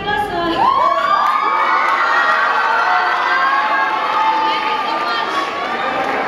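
A school audience cheering and screaming, many high young voices overlapping. The cheering swells about half a second in and stays loud.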